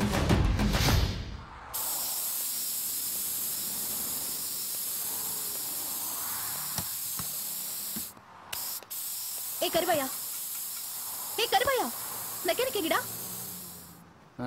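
Steady hiss of compressed air from a hose at a scooter, broken off briefly about eight seconds in, after song music fades out in the first second. Short voice sounds come near the end.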